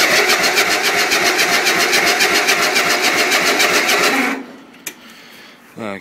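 Electric starter cranking a cold Briggs & Stratton 12 hp single-cylinder lawn tractor engine, an even chugging rhythm of several beats a second, without the engine catching. The cranking stops suddenly about four seconds in.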